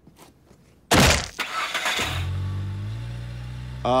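A sudden loud bang about a second in, then the station wagon's engine running with a steady low drone.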